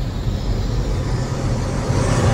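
Cinematic logo-intro sound effect: a swelling whoosh of noise building over a low rumbling drone.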